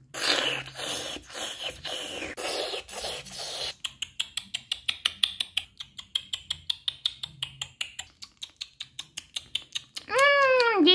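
A person's mouth sounds of pretend eating and drinking: a breathy slurping for nearly four seconds, then a quick, even run of small wet smacking clicks, about six a second, like fast chewing.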